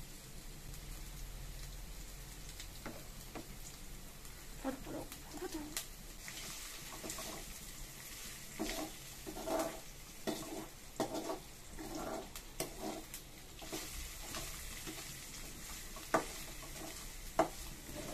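Chopped vegetables frying in a metal kadai with a steady faint sizzle, while a spatula stirs them, scraping and tapping irregularly against the pan. Two sharper clicks of the spatula on the metal come near the end.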